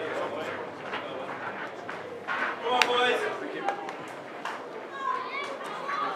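Several men's voices chatting at once, none clearly in front, with scattered short sharp clicks and taps.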